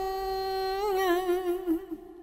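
Vietnamese ngâm-style poetry chanting: a single voice holds one long steady note, then moves through a few wavering ornamental turns about a second in and fades away near the end.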